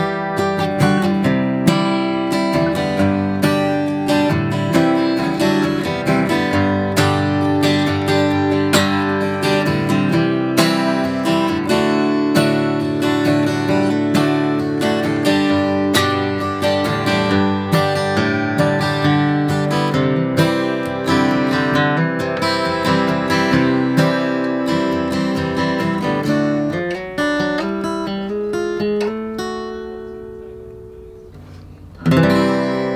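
1972 Martin D-35, a steel-string rosewood-and-spruce dreadnought acoustic guitar, played as an instrumental with several notes and chords a second, getting softer over the last few seconds.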